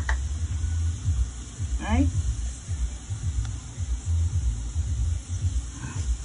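Onions and curry spices frying gently in oil in a stainless steel pan, a soft steady sizzle, under a louder low rumble that rises and falls.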